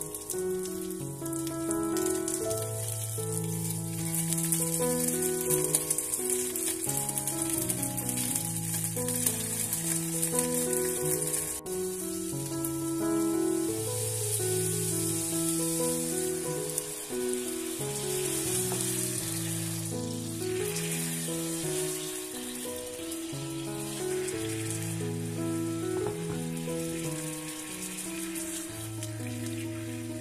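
Salmon fillets sizzling in hot oil in a non-stick frying pan. The sizzle grows louder around the middle as teriyaki sauce is poured into the hot pan. Background music with a melody and bass line plays throughout.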